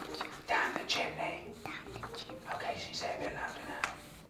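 Soft whispered speech.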